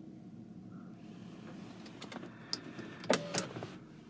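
Electric motor of a 2008 Nissan Murano's panoramic sunroof running with a low, steady hum, with a few sharp clicks and knocks in the second half.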